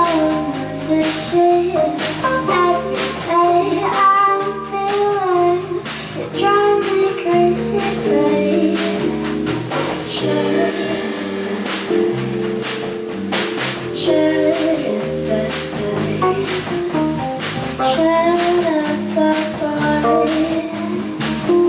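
A woman singing a melody into a handheld microphone, backed by a live band with bass guitar and a steady beat of percussion.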